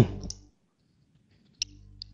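A single short, sharp click about one and a half seconds in, with a fainter click earlier and a faint low hum around the main click.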